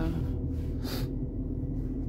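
Ford Ranger pickup idling, heard from inside the cab as a steady low rumble, with the climate fan turned down low. A short breath about a second in.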